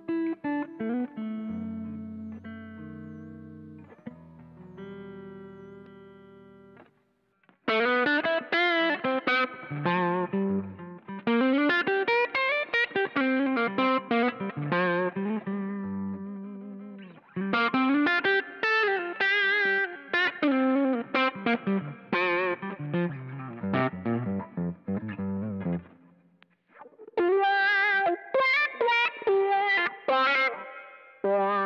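Electric guitar played through an effects pedalboard. Over the first several seconds sustained chords ring and fade out. About eight seconds in, fast single-note runs and licks take over, their pitch wavering with a warbling wobble, broken by two short pauses.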